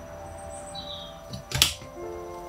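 Bonsai branch cutters snipping through a small ash branch: one sharp crack about one and a half seconds in, over soft background music.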